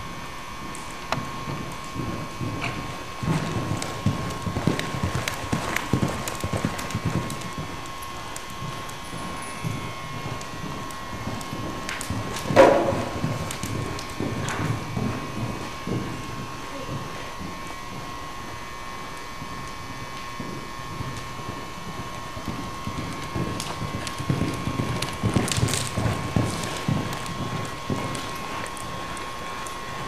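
Hoofbeats of a Welsh pony mare cantering and jumping on the sand footing of an indoor arena, an uneven run of low thuds that eases off for a stretch past the middle. One sharper, louder knock comes about twelve seconds in.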